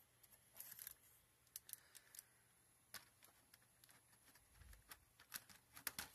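Near silence broken by faint, scattered clicks and light taps of hands handling a desktop computer's metal case and plastic parts.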